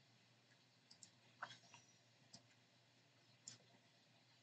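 Near silence broken by a handful of faint, scattered clicks of a computer mouse: button presses and scroll-wheel ticks.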